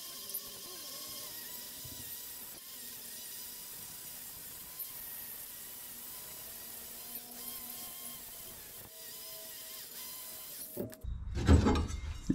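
Handheld grinder running steadily, cleaning up a thick steel patch panel: an even, hissy grinding sound that cuts off suddenly near the end.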